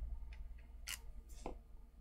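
A few faint plastic clicks from a small tube of eye brightener and its cap being handled and opened, the sharpest about a second in.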